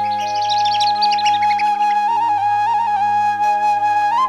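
Background score led by a flute holding one long note over a steady low drone, with a quick flurry of high, bright notes in the first second and a half.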